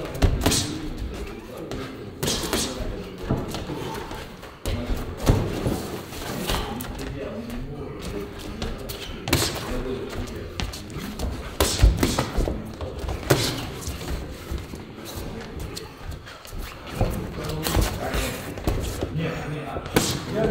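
Boxing gloves landing in light sparring: irregular sharp punch thuds, with the louder hits coming about two, five, nine, twelve and thirteen seconds in.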